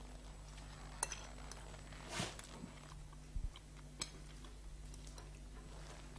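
Quiet room tone with a steady low hum, broken by a few faint, scattered clicks and light knocks, like small objects being handled.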